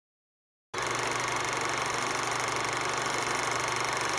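Film projector sound effect: a steady, fast mechanical clatter that starts suddenly out of silence under a second in.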